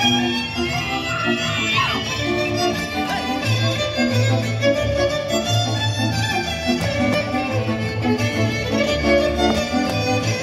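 Hungarian folk dance music: a fiddle carries the melody over a bowed bass line pulsing in a steady beat.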